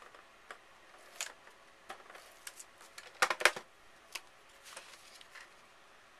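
Scattered clicks and short scraping strokes from a handheld ATG adhesive tape gun being run over paper and handled, with a quick cluster of louder clicks a little past three seconds in.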